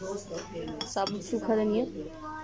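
A plate clinking a few times against a glass blender jar as whole coriander seeds and ground spices are tipped into it, with a brief voice in the background partway through.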